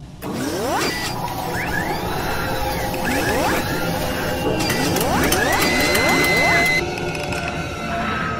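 Sound design of an animated channel promo: music with synthetic mechanical effects and three runs of rising sweeps, about a second in, about three seconds in and about five seconds in, followed by a steady high tone lasting about a second.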